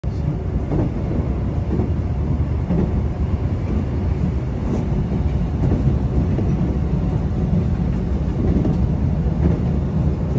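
Steady low rumble of a moving passenger train, heard from inside the carriage: wheels running on the rails.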